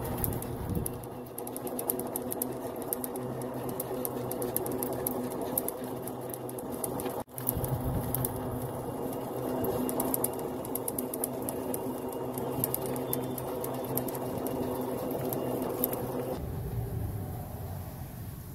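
Golf cart running as it drives: a steady mechanical hum with rapid fine clicking, briefly cut off about seven seconds in.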